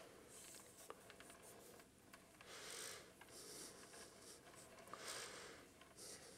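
Faint rubbing of a hand-turned plastic display turntable as it rotates, in two soft swells, with a light click about a second in.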